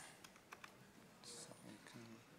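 Near silence: room tone of a large hall with faint scattered clicks and a brief soft hiss about midway.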